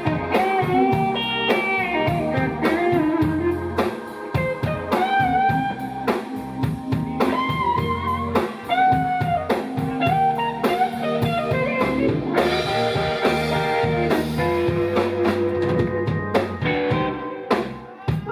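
Blues band playing live: an electric guitar lead with bent, sliding notes over drum kit, bass and organ, with no singing. The band drops back in loudness near the end.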